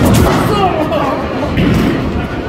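A thud as a bowling ball goes past the standing pin and into the pit, followed by people's voices reacting in the bowling alley.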